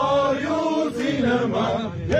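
A group of men chanting a song together, holding long notes that bend from one pitch to the next.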